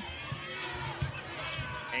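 Basketball being dribbled on a hardwood court: a run of short bounces, about three a second, over the murmur of an arena crowd.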